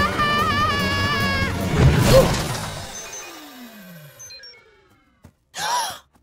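Cartoon sound effects over music: a high wavering tone, then a loud crash about two seconds in as a speeding cartoon bus careers into a bush. Falling tones follow and fade away.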